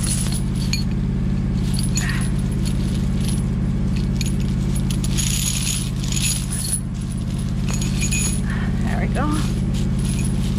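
Heavy chain links jangling and clinking as the chain is handled and wrapped around shrub stems, over the steady hum of an idling engine.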